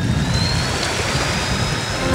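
Torqeedo electric outboard motor pushing an inflatable dinghy at speed: a thin, high whine climbing slowly in pitch over the rush and splash of the propeller wash.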